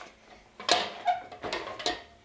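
Home gymnastics practice bar, a wooden rail on metal uprights, knocking and rattling as a gymnast casts on it: a sharp knock about two-thirds of a second in, smaller knocks after it and another sharp one near the end.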